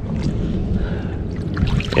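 Shallow bay water sloshing and trickling around a clam rake as it is worked along the bottom and lifted out, water draining from the wire basket.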